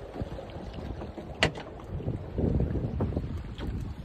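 Small powerboat running through choppy water: wind buffeting the microphone and water rushing and slapping against the hull. A single sharp knock about a second and a half in is the loudest sound.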